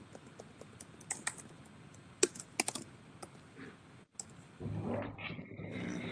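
Computer keyboard typing: a scattered run of key clicks in the first half. A softer, low, noisy sound follows near the end.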